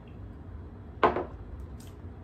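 A stemmed wine glass set down on the kitchen counter, one sharp knock about a second in.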